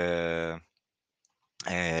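Speech only: a man's drawn-out hesitation sound, a pause of about a second, then his talking resumes near the end.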